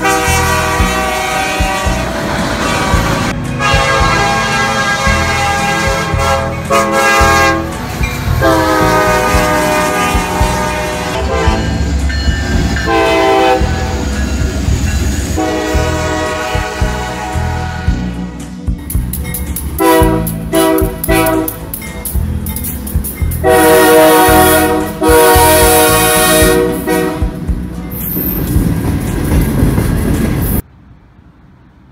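Diesel locomotive air horns sounding a series of long blasts, with a run of short, choppy blasts about two-thirds of the way through, over the steady rumble of a passing train.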